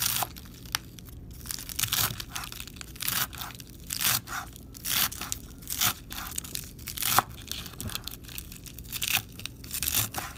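A large kitchen knife chopping lettuce on a wooden cutting board: each stroke a crisp crunch of the leaves ending in a knock of the blade on the board, in an uneven rhythm of about one or two cuts a second.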